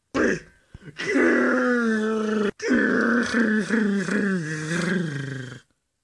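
A person's voice making drawn-out wordless cries for a plush Charizard, in two long stretches with a short break in the middle, as the toy is made to punch the door.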